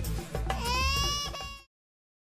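Dramatic TV-serial background music: a held, slightly wavering high note over drum hits. It cuts off abruptly less than two seconds in.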